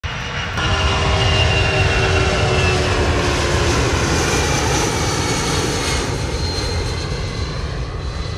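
A C-17 Globemaster III's four turbofan jet engines at climb power as the aircraft flies past: a loud steady jet rumble with whining tones that slide down in pitch as it goes by.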